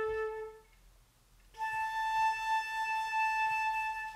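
Concert flute sounding a tuning A. The low A stops about half a second in, and after a short gap the A an octave higher is held steadily for almost three seconds.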